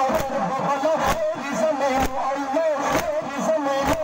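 A crowd of male mourners chanting a nawha (Shia lament) in unison. Together they strike their chests with their hands about once a second in matam, each strike landing as one sharp slap.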